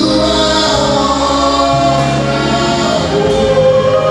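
Choir singing a gospel praise song, with long held notes over a low bass line that changes note about halfway through.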